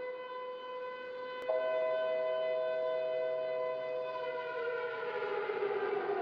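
Synthesized logo-intro sting: a steady droning chord of held electronic tones. It jumps louder as a higher tone comes in about a second and a half in, then slides down and spreads into a rushing swell near the end.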